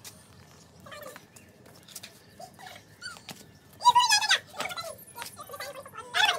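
A child's high-pitched, excited shout about four seconds in, with quieter children's voices around it.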